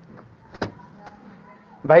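A faint steady hum with one sharp click about half a second in, then a man's voice starting near the end.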